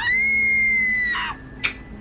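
A single high-pitched scream that sweeps sharply up and is held for about a second before fading.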